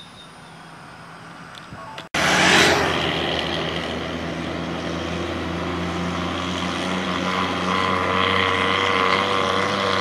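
Faint outdoor ambience, then after a sudden cut about two seconds in, loud road traffic: a heavy lorry and a car approaching, with a steady engine drone and tyre noise growing slightly louder toward the end.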